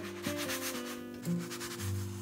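Rasping rub of a frying pan and crepe as the cooked crepe is slid off the pan onto a plate, a quick run of scratchy strokes. Background music with held notes plays underneath.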